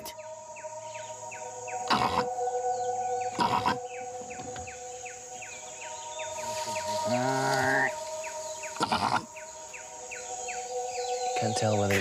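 Background music of held chords over steady rhythmic chirping, about three chirps a second. About seven seconds in, a greater one-horned rhinoceros gives a single pitched call that rises and falls over about a second. A few sharp knocks sound at other moments.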